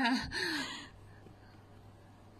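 A woman's breathy laugh or exhale trailing off with a falling pitch in the first second, then near quiet with a faint steady low hum.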